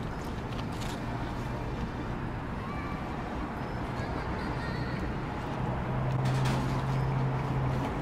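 Outdoor traffic ambience: a steady low engine hum, like a vehicle idling or passing, grows louder a little past halfway.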